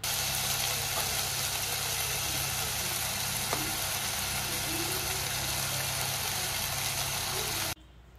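Tomatoes and onions frying in an enamel pot on an electric cooktop: a steady sizzle over a low, even hum. It starts abruptly and cuts off suddenly just before the end.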